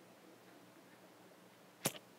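Quiet room tone, broken near the end by a single short, sharp click.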